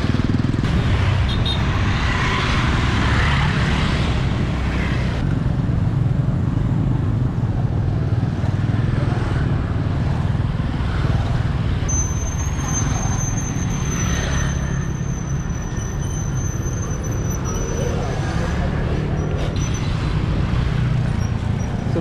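Wind buffeting the microphone over motorbike traffic passing on the bridge alongside. A thin, high, steady whine runs for about six seconds after the middle.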